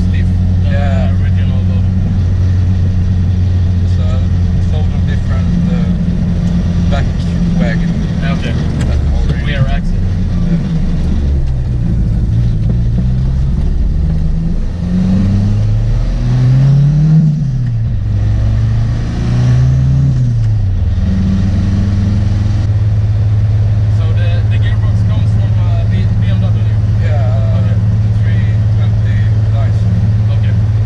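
Cabin sound of a 700 hp Volvo 745 wagon with a big Holset HX40 turbo, its engine droning steadily on the road. Midway the revs rise and fall several times in quick succession, loudest at the middle peak, then the drone settles back to a steady cruise.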